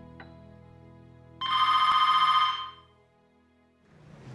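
Desk telephone ringing once, a single ring a little over a second long that starts about a second and a half in. Quieter background music fades out before it.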